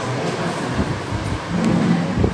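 Steady rushing background noise of a room picked up by an open microphone, with a few faint low sounds near the end.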